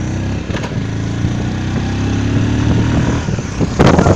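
A motor vehicle's engine running, its pitch rising slowly as it picks up speed, then easing off about three seconds in. Near the end, wind buffets the microphone in loud rough gusts.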